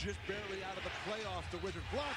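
Low-level NBA game broadcast audio: a play-by-play announcer's voice, with a basketball being dribbled on a hardwood court.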